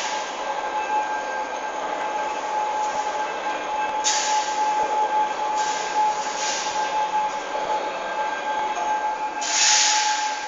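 An electric overhead crane running along its rail: a steady high-pitched whine over rolling noise, with bursts of hiss three times.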